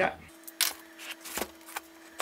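A cardboard shipping box being handled and opened by hand: a scatter of about half a dozen sharp clicks and taps on the box and its packing tape.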